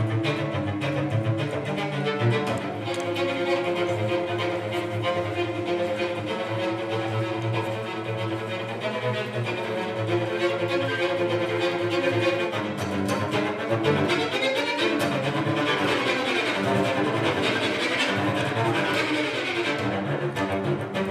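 A cello bowed in a continuous melodic passage of held notes. The playing grows brighter and busier over the last several seconds.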